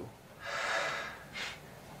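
A person breathing audibly near the microphone: one long breath, then a shorter, fainter one about a second and a half in.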